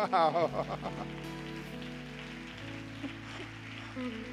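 Soft, sustained keyboard chords held under the room, changing to a new chord about two and a half seconds in. They follow a brief burst of a man's laughing voice at the very start.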